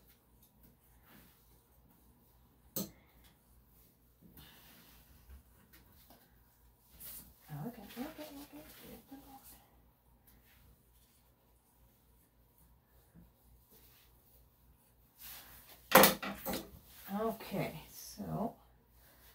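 Mostly quiet room tone with brief soft speech in the middle and again near the end. There is a light click about three seconds in, and a sharp knock about two seconds before the end, as a grooming tool is set down on the tabletop.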